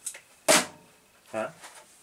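A single sharp knock about half a second in, from a hard object being handled.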